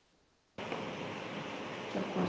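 Dead silence, then about half a second in a steady hiss of background noise starts abruptly and runs on evenly: the noise of a microphone line opening on a live video call.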